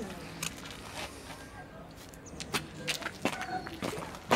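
A series of scattered sharp clicks and taps, as a glass marble is thrown and lands and skips on bare concrete. Faint voices sound in the background.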